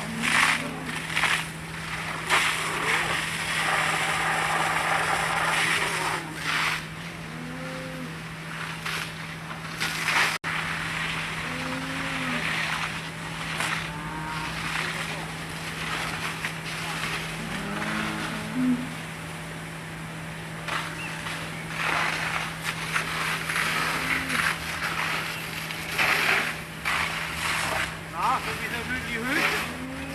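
Fire hose water jet spraying with a steady rushing hiss, with scattered voices calling and a constant low hum underneath.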